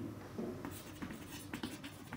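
Chalk writing on a chalkboard: faint, irregular short scratches and taps as words are written.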